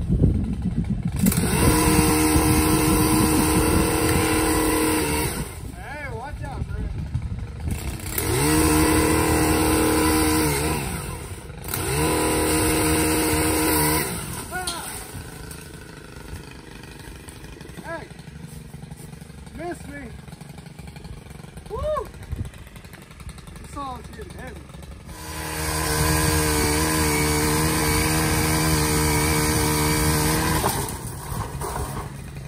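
Pole saw cutting tree limbs, its motor running hard in four bursts of a few seconds each with pauses between.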